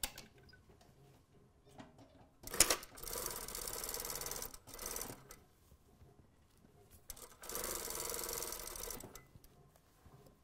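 Industrial sewing machine stitching a seam in two runs, the first about two and a half seconds long and the second about a second and a half, with a sharp click just before the first run.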